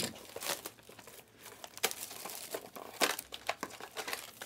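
Crinkling of a foil-wrapped Panini Prizm Choice trading-card pack as it is handled, in irregular sharp crackles.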